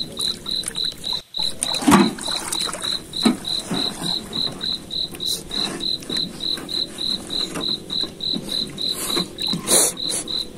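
An insect chirping in a steady, even pulse of about three and a half chirps a second, over irregular splashing and sloshing as a tin box is worked through shallow water, with a louder splash about two seconds in and another near the end.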